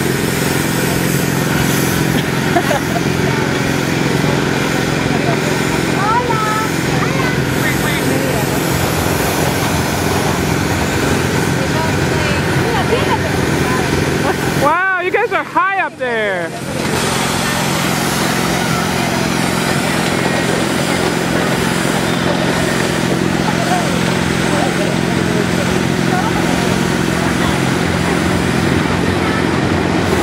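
Fairground kiddie ride running: a steady mechanical hum and rush under the ride, with voices around it. About halfway the sound briefly dips and a few wavering tones sweep up and down.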